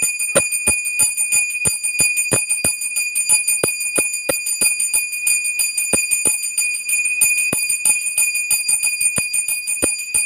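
Puja hand bell rung continuously, its clapper striking about three to four times a second over a steady high ringing tone.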